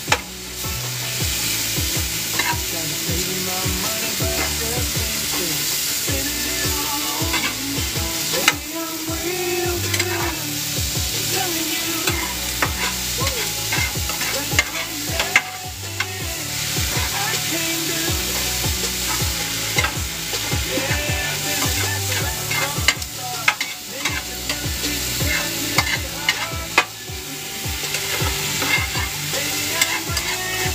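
Steak, bell pepper and onion sizzling in a pan on a wood stove, with a steady frying hiss and frequent sharp clicks and scrapes of a utensil as the food is stirred and turned.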